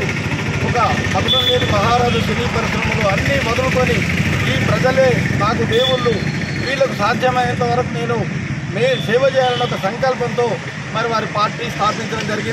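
A man speaking continuously in Telugu over a steady low rumble of engine or street traffic noise.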